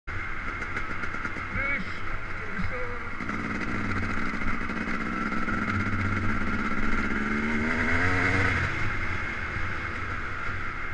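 Yamaha YZ250 two-stroke dirt bike engine running while under way, heard through heavy wind noise on the camera microphone. About seven seconds in the engine climbs in pitch as it revs, then drops back.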